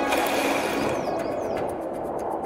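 A sudden rush of splashing water that slowly fades. Faint rapid ticking begins near the end.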